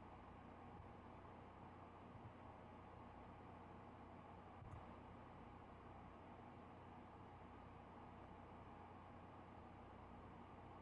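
Near silence: faint steady hiss and low hum of the recording, with one faint click about halfway through.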